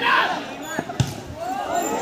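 A football kicked hard with a sharp thud about a second in, with a lighter touch just before it, over spectators shouting and talking.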